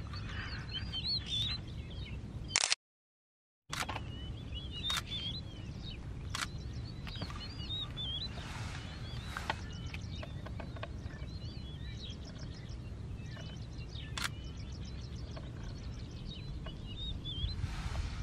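Small birds chirping and twittering over a steady low rumble, with a few sharp clicks. The sound drops out completely for about a second a little under three seconds in.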